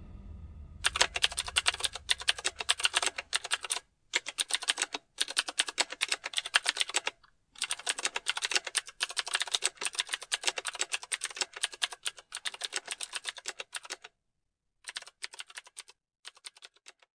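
Manual typewriter keys striking in quick runs of clicks, broken by short pauses, with a longer pause near the end before a last short run.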